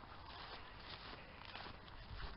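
Faint footsteps of someone walking through long meadow grass, with soft rustling.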